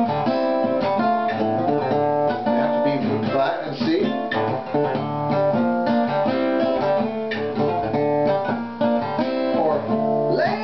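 Steel-string acoustic guitar picking and strumming a chord progression, with open strings ringing under the chord shapes. Notes change steadily throughout.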